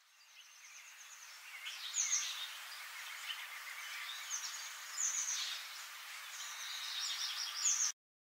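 Nature ambience of small birds chirping over a steady high hiss. It fades in at the start, with short high chirps every second or so, and cuts off abruptly at the end.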